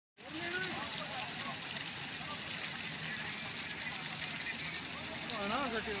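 Steady rush of flowing river water, with men's voices talking faintly in the background and a voice coming up more clearly near the end.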